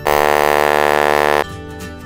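King Duo Gravis Silver Sonic bass trombone playing one loud, brassy held low note, cut off sharply after about a second and a half, over quieter backing music.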